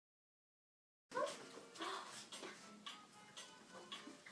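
Starting suddenly about a second in: a small dog's short, high whines, with several sharp clicks and faint music underneath.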